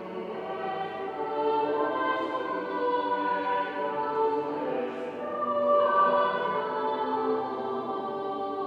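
A choir singing in several parts in a large church, holding long sustained notes, swelling to its loudest about six seconds in.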